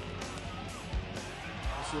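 Background music with low bass notes and a few soft beats, filling a pause in the commentary.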